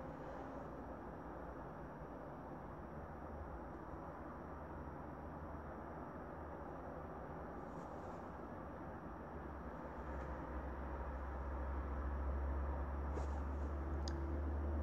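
Faint steady background noise with a low hum, the hum growing louder over the last few seconds.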